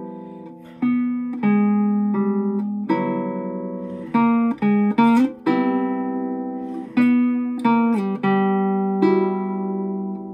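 Classical guitar played solo: fingerpicked notes and chords that ring and die away, with a run of short notes and a quick upward slide about five seconds in.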